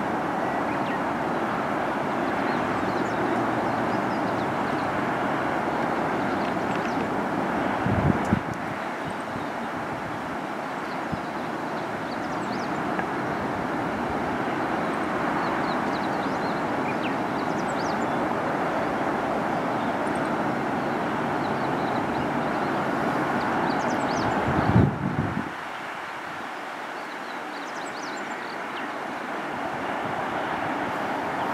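Steady hum of distant road traffic, with two brief low thumps, one about eight seconds in and one about twenty-five seconds in.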